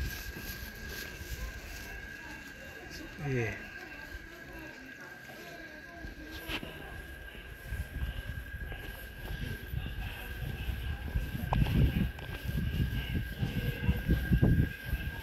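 Outdoor street ambience with faint, indistinct voices and a steady high-pitched whine throughout. There is a short falling sound about three seconds in and a sharp click near the middle. Uneven low rumbling on the microphone grows louder over the second half.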